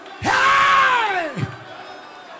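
A single loud, high wordless cry of praise from one worshipper, about a second long, its pitch dropping steeply at the end, over the murmur of a praising congregation.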